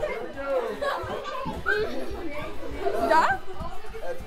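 A group of children chattering, laughing and shouting over one another as they play, with one short rising squeal about three seconds in.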